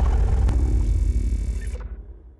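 Sound-design sting for an animated logo reveal: a deep, sustained low sound with a hiss above it, dying away and fading out near the end.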